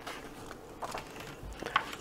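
Paper page of a picture book being turned by hand: a few soft, brief rustles, about a second in and again near the end.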